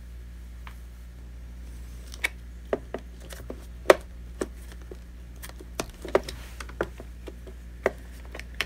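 Scattered plastic clicks and knocks as a robot vacuum's battery pack is handled and fitted back into its compartment, starting about two seconds in, the loudest near the middle. A steady low hum runs underneath.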